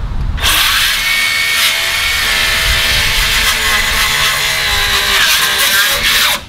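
Circular saw cutting through a cedar 4x4 post, finishing the last side of a cut already made on three sides. The saw starts about half a second in and runs steadily under load.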